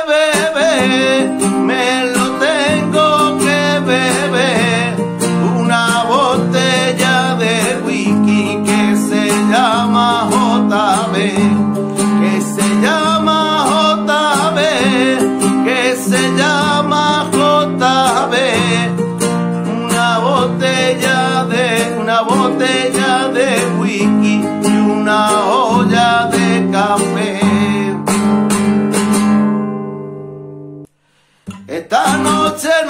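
Nylon-string classical guitar strummed in a rumba rhythm, with a man singing along. The playing dies away near the end.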